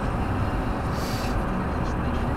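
Steady road and engine noise heard inside a car cabin cruising at motorway speed.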